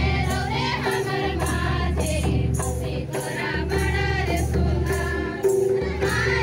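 A welcome song sung by a group of voices, accompanied by music with a steady drum beat.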